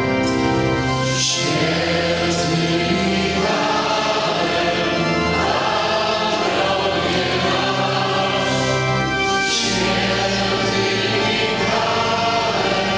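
A hymn sung by many voices together, in long held notes that move from pitch to pitch in steps, without a break.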